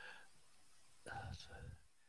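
Near silence, with a faint, low voice for under a second just past the middle.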